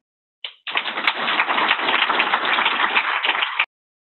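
Audience applauding, starting about half a second in and cut off suddenly near the end.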